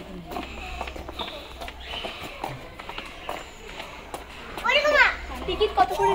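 Background chatter of people's and children's voices, then a child's high-pitched call with quick rises and falls in pitch near the end.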